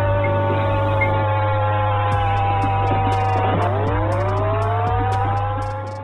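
Air-raid warning siren wailing over a steady low mains hum: its pitch sags slowly, dips sharply about three and a half seconds in, then climbs back up. It is the red-alert air-raid signal, the warning of an imminent air attack.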